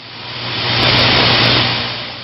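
A swell of static noise with a steady low hum, rising to a peak about a second in and then fading: a glitch sound effect for the logo animation. A few faint ticks sit on top near its peak.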